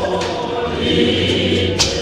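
A choir of many voices singing a Zion church hymn together, unaccompanied and sustained, with a short sharp sound just before the end.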